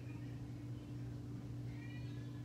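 A domestic cat giving a faint, short meow near the end, with a softer chirp just after the start, over a steady low hum.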